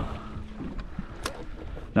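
Light wind and water noise around a small fishing boat, with a faint steady low hum and a few soft ticks.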